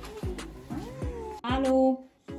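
A young child's whiny cries that rise and fall in pitch, ending in a louder, held cry just before the end.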